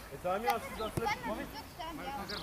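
Players' voices, many of them children's, calling out on a football pitch, with two sharp knocks of a football being kicked about half a second and a second in.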